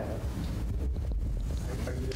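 Low, steady rumble of background noise picked up by the microphone, with a few faint clicks near the middle.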